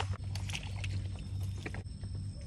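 A low, steady engine hum, like a small boat's motor running at a distance, with scattered light clicks and taps over it.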